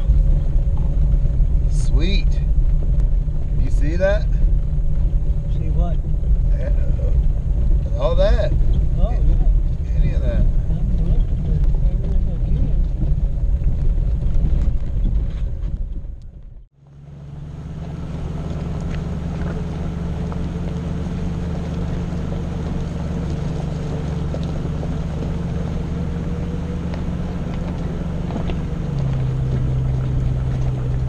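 Jeep Grand Cherokee ZJ running at low speed on a gravel trail, a steady engine and drivetrain rumble heard inside the cab, with a few short voice sounds. About halfway through the sound fades out at an edit and returns from outside the vehicle: the same steady engine rumble with wind on the microphone.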